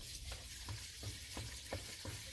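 Liquid oxidizer pouring from a plastic jerrycan into a well: a faint steady hiss with small crackles.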